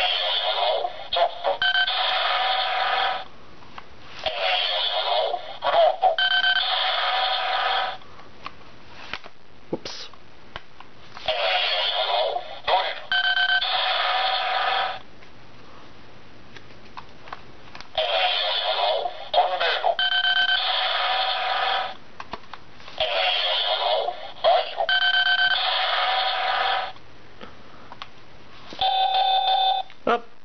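Bandai DX Chalice Rouzer toy transformation buckle playing its electronic sound effects through its small built-in speaker as rouse cards are swiped through it. It plays six bursts of a few seconds each, with short gaps between them. Each burst opens with a recorded voice call and goes on into beeping synthesized tones and a short tune.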